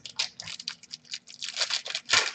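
Foil trading-card pack wrapper crinkling as it is handled in the hands: a quick, irregular run of small crackles.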